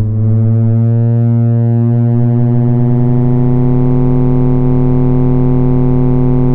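Make Noise Dual Prismatic Oscillator holding one steady, low synthesizer tone. As frequency modulation from oscillator A to oscillator B is turned up in the first second or two, the tone grows brighter and buzzier, then holds.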